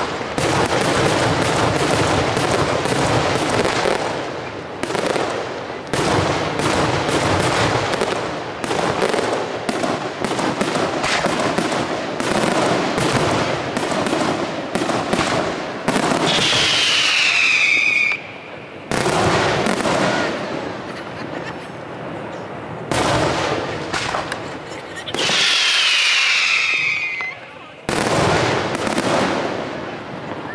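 Aerial fireworks display: a rapid, dense series of shell bursts and bangs, with two long falling whistles, one about midway and one near the end.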